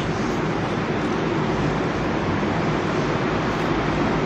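Steady background noise, a constant even rushing hiss, in a pause between spoken phrases.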